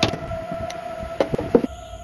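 A hammer tapping pins into a wooden knife handle: a few sharp knocks, one near the start and a quick cluster a little past the middle. Under them a steady electronic music tone plays and cuts off shortly before the end.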